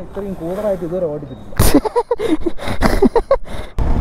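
People's voices talking and laughing close by. Just before the end the sound switches suddenly to the steady wind-and-engine noise of a motorcycle being ridden.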